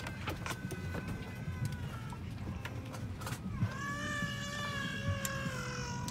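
Steady low hum of the parked airliner's cabin, with clicks and knocks of passengers moving bags and seats in the aisle. About halfway through, a long, high, wavering call, like a voice or a cat's meow, rises out of it and is held, sinking slightly in pitch, to the end.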